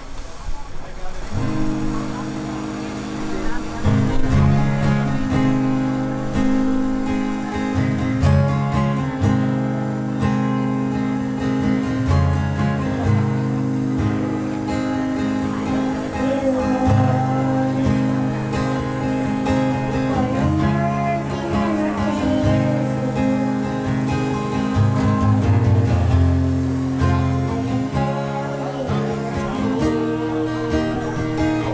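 Acoustic guitar strumming chords through a PA system, starting about a second and a half in, accompanying a young girl singing a worship song.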